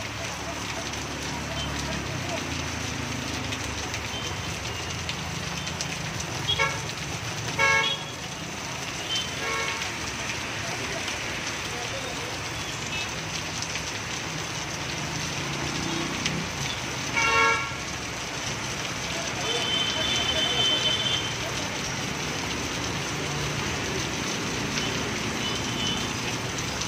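Heavy rain falling steadily, with a vehicle horn tooting briefly four times, the loudest toot a little past halfway, and a low traffic rumble underneath. A short high-pitched beep sounds after the last toot.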